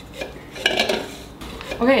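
Aluminium drink cans knocking and clinking against each other and the countertop as they are handled, a clatter lasting about a second in the middle.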